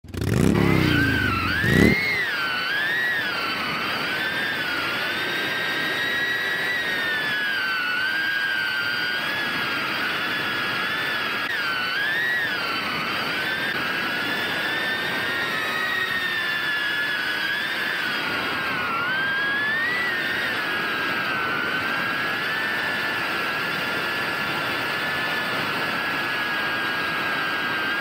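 BetaFPV Beta95X V3 cinewhoop quadcopter's brushless motors whining in flight, the high pitch rising and dipping as the throttle changes. In the first two seconds a lower, louder sweep rises as the motors spin up.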